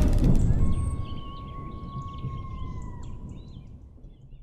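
Outro sting of a wildlife channel's logo: a low rumble dies away under short bird-like chirps, with a held whistle-like tone that dips slightly and stops about three seconds in.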